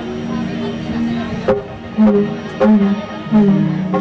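Live stage-band instrumental music: steady held notes, with sharp percussion hits coming in about every half second to second in the second half.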